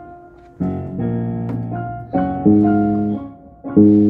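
Worship music practice: a five-string electric bass plucked under sustained keyboard chords. After a quieter first half second, chords come in and change near two, two and a half and four seconds in.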